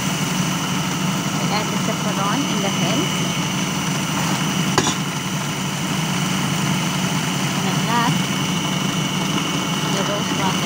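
Electric food processor motor running steadily, a constant low hum with a thin high whine, as it beats eggs with vanilla for cake batter. One sharp click about halfway through.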